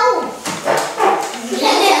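Children laughing and talking together, with a voice sliding down in pitch at the start.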